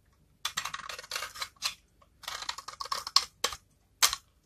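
Utility knife blade scraping and cutting into a bar of dry soap, a crisp crackling as flakes break away, in two strokes of about a second each with a short sharp one at the very end.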